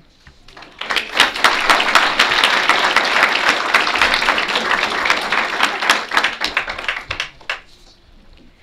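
Audience applauding, many hands clapping together. It swells about a second in, holds steady, and dies away shortly before the end.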